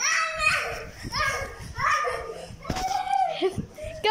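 Children shrieking and shouting excitedly at play, a string of short high cries that each fall in pitch, with a few low thuds of movement near the end.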